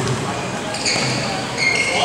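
Basketball shoes squeaking on an indoor court floor during play, with short high squeals in the second half, while a basketball bounces. The sound rings in a large gym hall.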